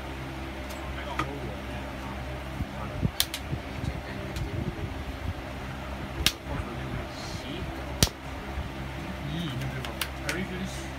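Trading cards in plastic sleeves being put down on a playmat, with a few sharp taps about three, six and eight seconds in, the last the loudest, over the steady hum of a fan.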